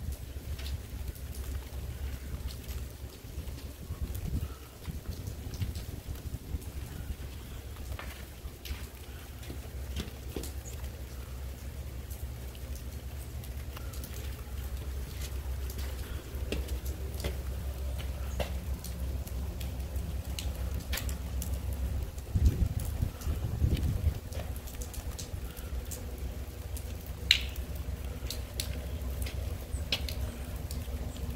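Meltwater and rain dripping off the porch roof line, scattered drip taps over a steady low rumble of rain. A couple of dull knocks come about two-thirds of the way in.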